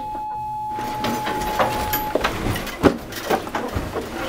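An electronic class-change bell, one steady tone for about two seconds, signalling the end of the lesson. It is followed by classroom clatter of students packing up and moving chairs, with a sharp knock about three seconds in.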